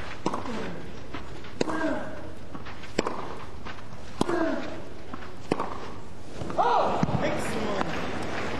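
Tennis rally: crisp racquet strikes on the ball about every second and a quarter, each followed by a player's grunt, with a louder vocal cry near the end.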